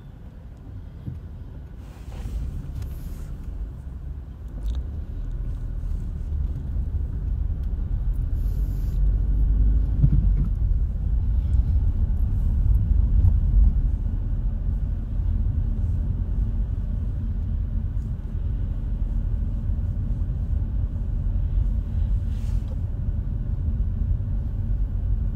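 Low road and engine rumble heard from inside a car as it pulls away and drives slowly along a street. It grows louder over the first ten seconds or so, then holds steady.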